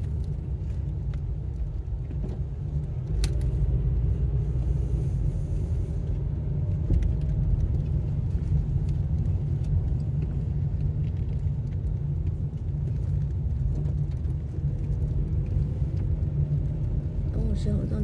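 A car driving slowly, heard from inside the cabin: a steady low engine and road rumble that grows a little louder about three seconds in.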